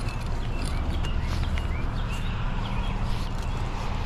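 Footsteps on grass as the wearer of a body-worn camera walks, with a steady low rumble and rustle on the microphone and a few short high chirps in the first half.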